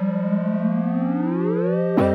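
Synthesizer intro music: a held chord with several of its notes sliding upward in pitch over the second second, landing on a new chord at the very end.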